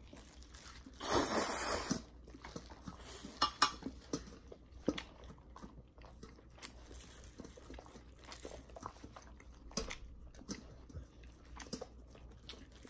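A person slurping in a mouthful of spicy instant noodles for about a second, starting about a second in, then chewing, with scattered small wet clicks and smacks.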